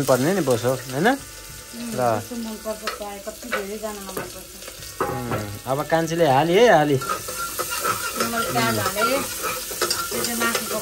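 Sliced shallots sizzling in hot oil in an aluminium pressure cooker while a metal spoon stirs and scrapes the pot. A wavering, pitched, voice-like sound comes and goes over it and is the loudest thing heard.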